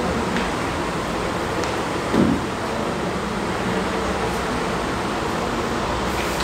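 Steady background noise, an even hum and hiss, with one short low bump about two seconds in.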